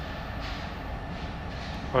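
Steady low rumble of an approaching diesel freight train, heard before it comes into view.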